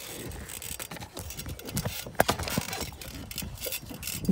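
Handling noise from a phone being passed down and moved about in the hand: rustling and scraping against the microphone, with a sharp knock about two seconds in.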